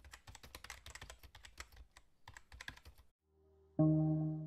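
Keyboard-typing sound effect: a quick run of faint key clicks for about two seconds, a short break, then a briefer run. After a moment of near silence, a held musical chord starts just before the end and is the loudest sound.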